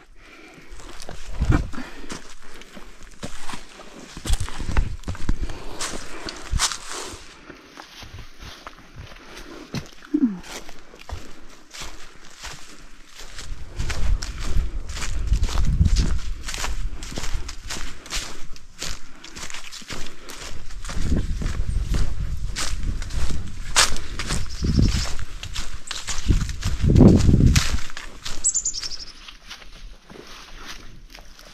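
Footsteps crunching through thick dry fallen leaves on a forest trail, a steady run of crackling steps. In the second half there are spells of low rumble under the steps.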